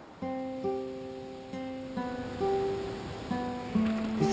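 Background music: an acoustic guitar picking single notes in a slow, ringing melody that starts just after the beginning.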